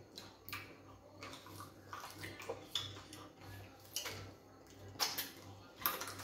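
Close-miked eating sounds: scattered wet mouth smacks and clicks as fufu dipped in slimy ogbono soup and chicken are chewed, the sharpest couple near the end.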